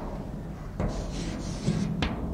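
Chalk writing on a blackboard: a sharp tap as the chalk strikes the board about a second in, then a scratchy stroke that lasts about a second.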